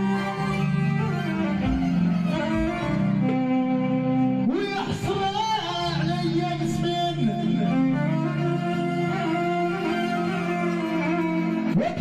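Live Moroccan chaabi music led by a bowed violin playing long, sustained melodic lines over a steady accompaniment, with sliding pitch bends about four and a half seconds in and again near the end.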